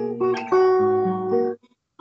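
Acoustic guitar playing chords in the key of B. A new chord comes in about half a second in and rings, then the sound cuts off suddenly at about a second and a half.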